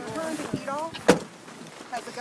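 A pickup truck's door slams shut about a second in, a single sharp thud, amid voices.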